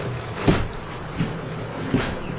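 Footsteps and knocks of a person stepping up and through a yacht's walk-through windshield onto the deck: one sharp thump about half a second in, then two lighter knocks, over a steady low hum.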